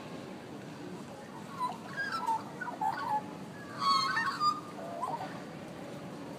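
Australian magpies singing in short, gliding, warbling phrases, loudest about four seconds in, over steady low background noise.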